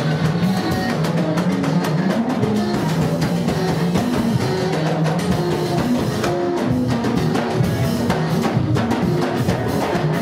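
Band music for dancing: a drum kit keeping a steady beat under a moving bass line and guitar, loud and continuous.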